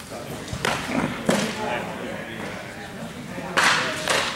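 Sharp smacks of a baseball into leather gloves: two brief ones about a second in and a louder, slightly longer one near the end.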